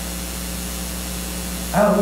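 Pause in a man's speech filled by a steady background hiss and low hum; his voice comes back near the end.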